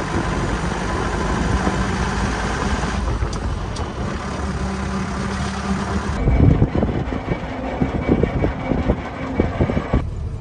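Mahindra jeep engine running steadily as the jeep drives. About six seconds in the sound turns duller, with irregular low thumps of wind buffeting the microphone.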